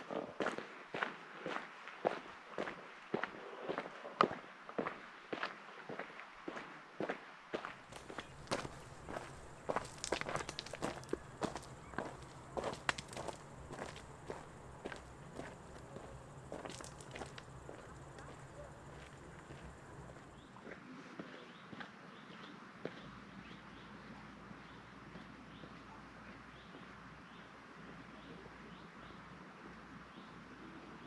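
Footsteps crunching on a gravel trail at a steady walking pace, about two steps a second. They grow fainter and die away a little past halfway, leaving a faint steady outdoor hush.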